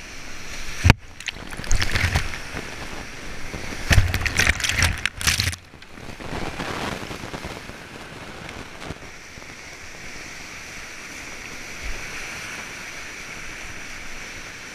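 Whitewater rapids rushing around a kayak, with several loud splashes in the first six seconds as the boat punches through the waves. After that, a steady roar of the river.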